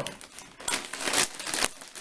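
A foil-lined potato chip bag crinkling as it is handled and pulled open at its sealed top, the crackling getting louder about half a second in.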